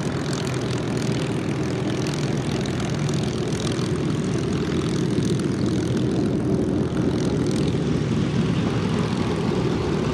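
Piston V-12 engines of a Supermarine Spitfire (Rolls-Royce Merlin) and a Messerschmitt Bf 109E (Daimler-Benz DB 601) running at low taxiing power, a steady propeller-driven drone.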